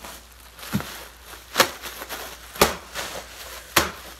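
Bubble wrap popping one bubble at a time: four sharp pops about a second apart, with plastic crinkling between them.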